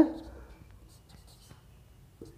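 Marker pen writing on a whiteboard: faint, short scratchy strokes as letters are formed.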